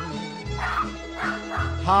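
A Maltese dog barking over background music.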